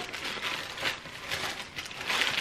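Tissue paper rustling and crinkling as it is pulled open inside a cardboard shoebox, uneven and crackly, a little louder about a second in.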